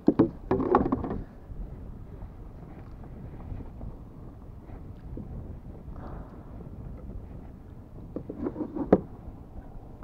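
Wind buffeting the microphone, with a few knocks and clatters of gear against a plastic kayak hull in the first second and again near the end, the sharpest about nine seconds in.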